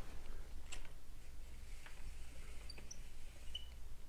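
Quiet room tone with a steady low hum and a few faint, scattered clicks.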